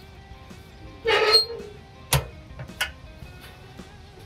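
The steel firebox door of a Workhorse 1957 offset smoker being shut over background music. There is a short rough metal scrape about a second in, then a sharp clank as the door closes, followed by a lighter click.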